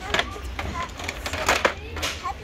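Faint, indistinct voices with two sharp clicks, one just after the start and one about one and a half seconds in, over a steady low hum.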